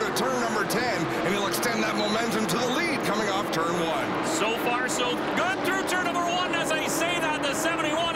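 A field of NASCAR stock cars' V8 engines at race speed, many pitches rising and falling as the cars accelerate and brake through the corners, heard in a TV broadcast mix with a commentator's voice over it.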